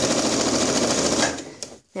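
Janome electric sewing machine stitching at speed, a fast, even run of needle strokes, as it sews a fabric casing closed over elastic. About a second and a half in it winds down and stops.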